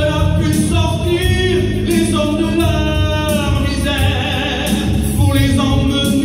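A man singing a French Christian hymn (cantique) into a microphone through a sound system, with musical accompaniment underneath the voice.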